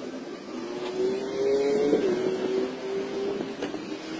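A car engine running nearby, a steady engine tone that rises slightly about a second in, then holds level.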